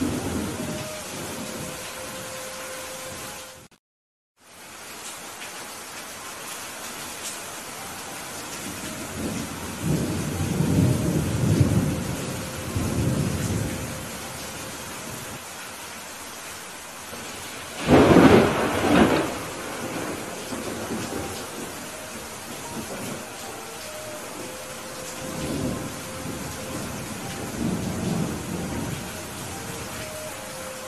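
Heavy rain falling steadily, with thunder: low rolling rumbles about a third of the way in, a loud sharp thunderclap just past the middle, and more rumbling near the end. The sound cuts out completely for about half a second some four seconds in.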